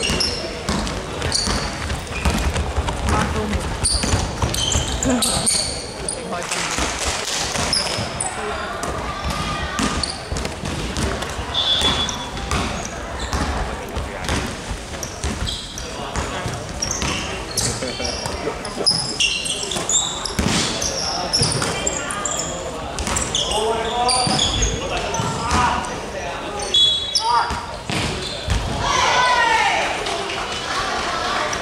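Basketball bouncing on a hardwood court during play, with sneakers squeaking and players calling out, echoing in a large sports hall.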